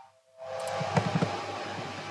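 Steady background hiss from a microphone, with a soft knock about a second in; the sound drops out briefly at the very start.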